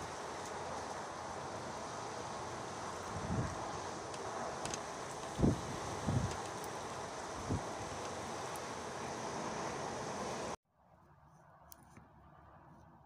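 Steady wind blowing over the microphone, with several low gust buffets in the middle. It cuts off abruptly near the end to a much quieter background.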